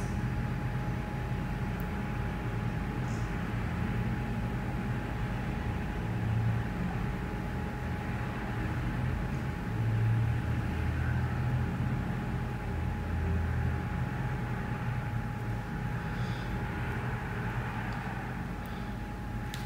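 Steady background noise: an even hiss with a faint constant hum and a low rumble that swells a few times.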